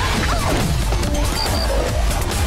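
Action-cartoon soundtrack: dramatic background music mixed with crashing impact and debris sound effects.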